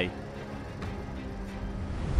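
Outdoor street ambience with the steady hum of vehicle engines and traffic, rising slightly near the end.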